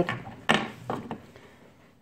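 A sharp knock about half a second in, then a couple of fainter clicks: small homemade metal dent-pulling tools being handled and knocked against a desk.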